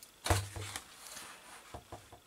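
A sheet of paper being lifted out of a cardboard presentation box and handled. There is a loud rustle and knock about a quarter second in, quieter paper handling after it, and a couple of faint taps near the end.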